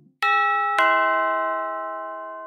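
Two-tone doorbell chime ringing ding-dong: two struck notes about half a second apart, the second lower, each left to ring and slowly fade.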